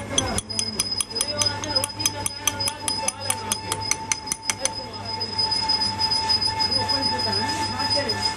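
A lathe running with a steady whine, while a hand-held tool and nut are worked on a rotating bearing housing. A fast, even ticking of about five clicks a second runs through the first half and then stops. Voices are talking in the background.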